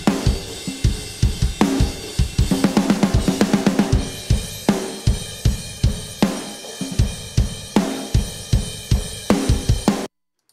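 Playback of a recorded rock drum kit: kick, snare and ringing cymbals, heard through the overhead mics before any EQ. The playing builds into a heavy quarter-note section with big accented hits about every second and a half. The cymbal carries little whistle-like tones that the producer later carves out with EQ.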